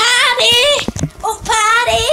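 A child singing in a high voice, drawing out wavering held notes in two phrases with a short break between them.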